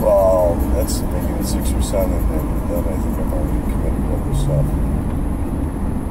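Steady low road and engine rumble inside a moving car's cabin, with a few faint snatches of speech, the clearest right at the start.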